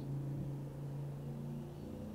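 A steady low hum with a light hiss: room tone in a pause in the talk.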